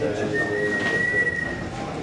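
A single high, thin whistle-like tone, held for about a second and a half and rising slightly in pitch, over faint room murmur.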